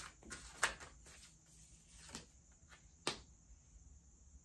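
A deck of tarot cards being handled at a table: a few short, sharp card taps and flicks, loudest about two-thirds of a second in and again about three seconds in.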